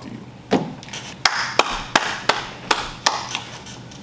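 A quick run of about eight short, sharp taps on a tabletop, irregularly spaced at roughly three a second.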